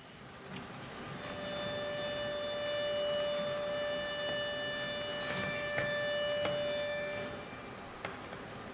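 Pitch pipe sounding one steady, unwavering note, starting about a second in and stopping near the end, giving an a cappella barbershop chorus its starting pitch; faint hummed pitches from the singers sit beneath it and carry on after it stops.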